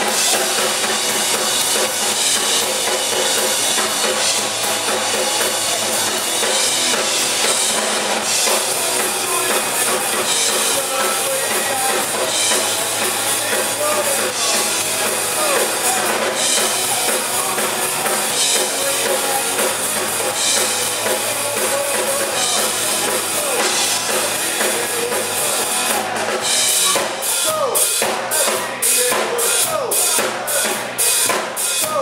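A live rock band playing loud, electric guitar over a full drum kit with bass drum. Near the end the drums come forward in evenly spaced hits, about three a second.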